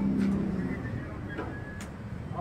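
Low murmur of spectators' voices in a billiard hall, with a low hum that swells and fades in the first second and two short sharp clicks.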